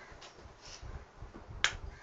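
A single sharp click near the end, with a couple of fainter soft noises before it.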